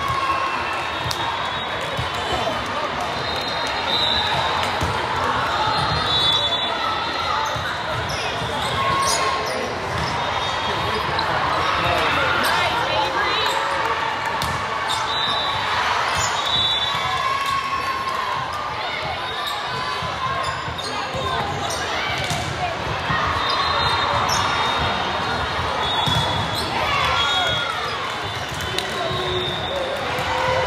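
Volleyball play in a large sports hall: a ball being hit and bouncing on the hardwood court, with players' and spectators' voices all through, everything echoing in the hall.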